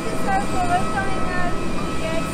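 Steady jet aircraft noise on an airport apron, a constant rumble with a thin high whine, with people talking over it.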